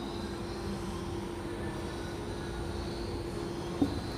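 A steady hum holding one low tone over faint, even room noise, with a brief faint sound just before the end.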